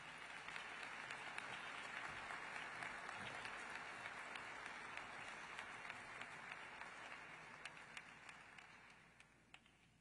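A large audience applauding steadily, the clapping thinning out and dying away near the end.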